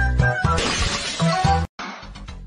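Music with a shattering crash about half a second in, lasting roughly a second, then the sound cuts off suddenly near the end.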